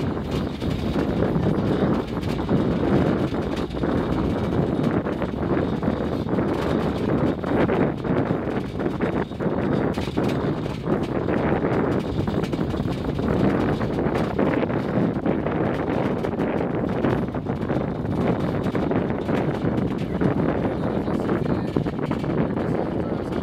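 Wangerooge Island Railway's 1000 mm narrow-gauge train running on the track, heard on board: a steady rumble with frequent irregular clicks and knocks from the wheels and the shaking carriage.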